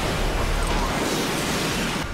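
Steady rushing noise with a low rumble: a Tomahawk cruise missile's solid rocket booster firing as the missile rises through the water after a submarine launch.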